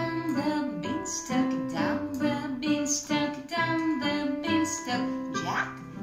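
A woman singing a children's song while accompanying herself on piano.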